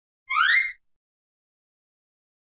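A short cartoon sound effect: a quick tone sweeping upward in pitch, about half a second long, near the start.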